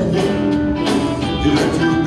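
Live gospel quartet band playing: electric guitar over drums, bass guitar and keyboard, with held notes running through.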